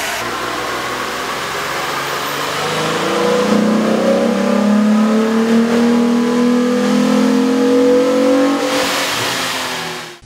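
Jeep Wrangler 3.8L V6 with a K&N performance air intake running on a chassis dyno. About three seconds in it gets louder and the pitch climbs slowly as the engine accelerates under load, then fades away near the end.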